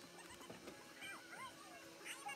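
Near silence, with a few faint, short squeaky coos from a baby, rising and falling in pitch, about halfway through.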